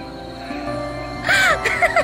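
Background film score with steady held notes over a bass line. About a second and a quarter in comes a short, loud, rising-and-falling vocal cry, with a couple of smaller ones after it.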